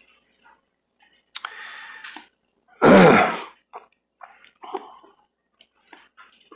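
A man clears his throat once, loudly, about three seconds in, after a shorter, quieter rasp a second or so before.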